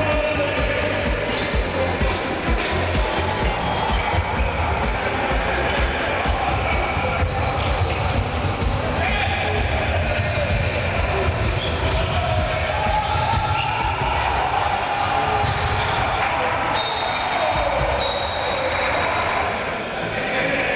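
A handball bouncing on a wooden indoor court as players dribble, heard over steady music and voices.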